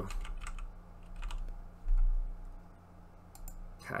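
Typing on a computer keyboard: a short run of key clicks, with a pause and a few more clicks near the end. A single deep thump comes about halfway through.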